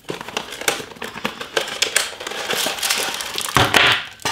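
Cardboard and plastic packaging rustling and crinkling in the hands as a product box is unfolded and its contents pulled out, with many small irregular crackles and a louder rustle near the end.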